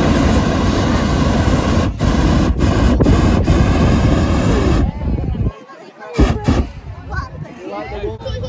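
Hot air balloon propane burner firing: a loud, steady blast of flame for about five seconds, with a few momentary dips, that then cuts off.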